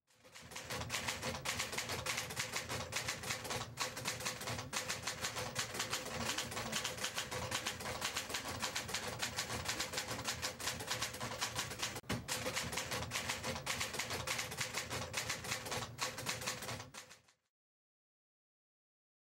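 Fast, continuous mechanical clatter with a steady faint hum under it. It starts abruptly and cuts off shortly before the end.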